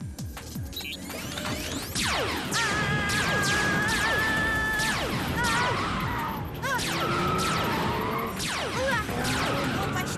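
Cartoon chase soundtrack: action music under a rapid string of falling-pitch zapping sound effects and crashing impacts.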